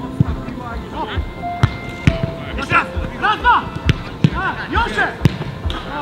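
Football being kicked during passing and shooting drills: several sharp thumps of boot on ball, spaced irregularly.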